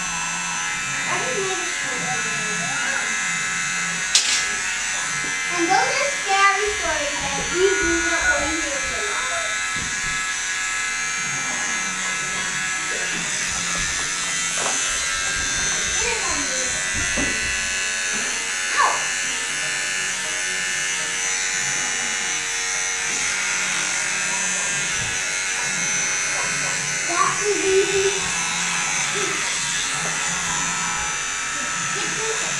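Electric hair clippers buzzing steadily while cutting a boy's hair close at the back and sides of the head.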